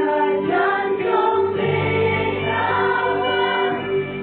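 A group of women singing a gospel worship song together into microphones, amplified over a live band with acoustic guitar and steady low bass notes.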